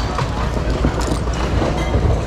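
Handling noise from items being rummaged through in a bin, with a few sharp clicks, over a steady low rumble.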